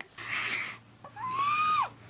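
A woman's breathy sigh, then one short, high-pitched squeal of delight that drops away at the end: she is gushing over a cute romantic moment, literally blushing.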